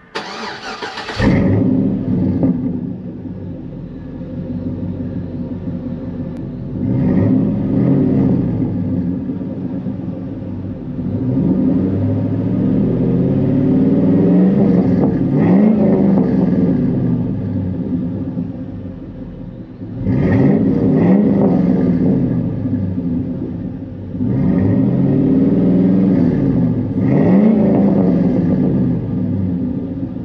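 A 2004 Chevrolet SSR's 5.3-litre Vortec V8 heard at its Flowmaster dual exhaust: it cranks and starts in the first second, settles to idle, then is revved four times, each rev rising and falling back to idle.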